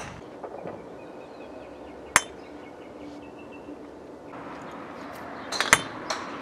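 Golf driver striking a ball with a sharp metallic clink near the end, the loudest sound. Another sharp strike comes about two seconds in.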